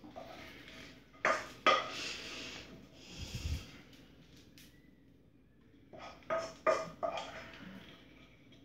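A wooden spatula scraping and knocking against a frying pan as food is scraped out onto a plate. There are two sharp knocks a little after a second in, a stretch of scraping after them, and two more knocks at about six to seven seconds.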